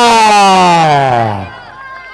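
A man's drawn-out shout, one long vowel held and sliding steadily down in pitch until it dies away about a second and a half in, leaving faint background voices.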